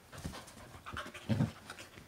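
Australian Kelpie panting, with soft irregular rustling and a brief, louder low-pitched sound about a second and a half in.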